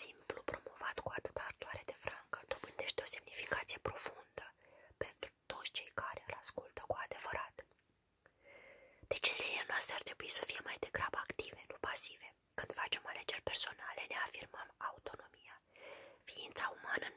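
A woman reading aloud in a hoarse whisper, her voice reduced by severe laryngitis, with a brief pause about eight seconds in.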